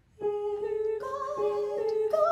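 Women's vocal trio (soprano, mezzo-soprano and alto) begins an a cappella piece, the first voice entering on a long held note and further voices joining on higher notes about a second in to build a sustained chord.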